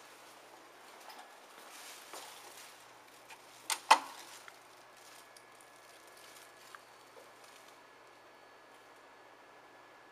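Quiet background with two sharp clicks in quick succession about four seconds in, and a faint steady high whine through the second half.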